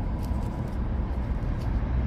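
Steady background rumble of road traffic from cars on a busy road and parking lot.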